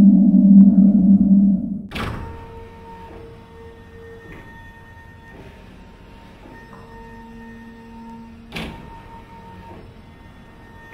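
Electronic drone-and-tone soundtrack: a loud low drone cuts off about two seconds in, leaving faint held tones. Two sharp thuds sound, one just as the drone stops and one near the end.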